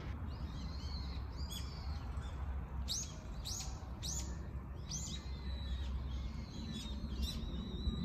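Birds calling in the trees: a run of four sharp, high chirps about half a second apart in the middle, with thinner high calls before and after. A steady low rumble lies underneath.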